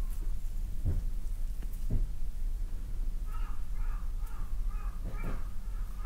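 Oiled hands rubbing and kneading a big toe close to binaural microphones: soft skin-on-skin rubbing and handling noise over a low rumble, with a few soft thuds. From about halfway in, a run of short high calls repeats a few times a second.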